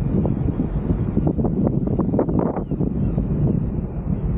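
Wind buffeting the microphone aboard a motor cruiser under way, in uneven gusts over the low, steady noise of its engine and the water.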